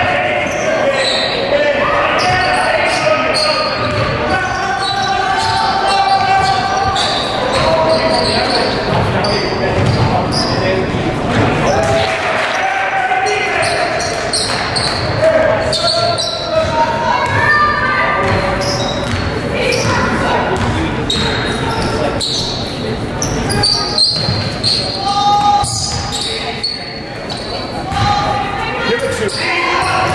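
Basketball being dribbled on a hardwood gym floor, with many short bounces, over steady talk and calls from players and spectators, all echoing in a large hall.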